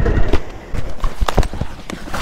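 Motorcycle engine running, then cut off a fraction of a second in. Irregular knocks and clicks follow.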